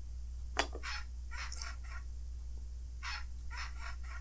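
A toy animal sound puzzle's small speaker playing a recorded horse whinny, set off as the horse piece is pressed into the board. It comes faintly, in several short, hoarse, broken bursts.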